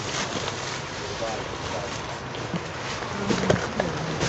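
Rustling and crinkling of plastic-wrapped handbags being handled as one is pulled down from a packed shelf, with a few sharp clicks near the end.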